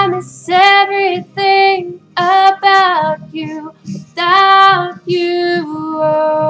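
A girl's solo singing voice, in about six held phrases of long sustained notes with short gaps between them.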